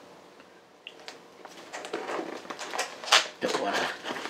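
Scissors slitting open a small cardboard box: a run of short scratchy cuts and rustles begins about a second in, the loudest about three seconds in.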